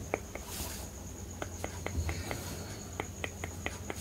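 A steady, high-pitched pulsing trill like an insect's, with a scatter of soft clicks over it and a brief hiss about half a second in.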